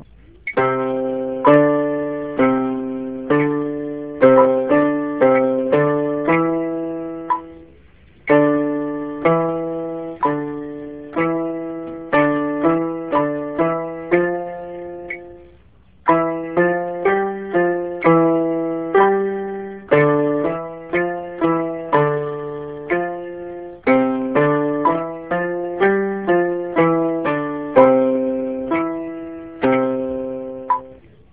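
Electronic keyboard in a piano voice, both hands playing a slow, even finger-dexterity exercise at a metronome speed of 60. The exercise runs as repeated note patterns in four phrases of about eight seconds each, with brief breaks between them.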